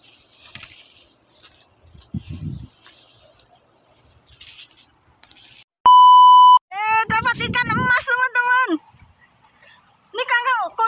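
A loud, steady test-tone beep lasting under a second, the kind played with TV colour bars, followed by about two seconds of a high, wavering, voice-like sound effect.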